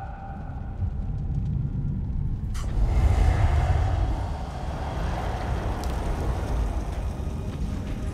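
Film sound of a large fire burning, a deep steady rumble, with a sudden rush of flame noise about two and a half seconds in that swells and then settles.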